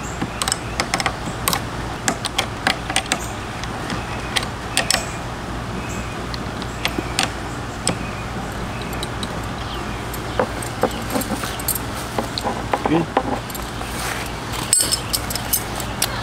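Light metallic clicks and clinks, irregular and scattered, from hands and small tools working a brake line fitting at an ATV's handlebar master cylinder, over a steady low hum.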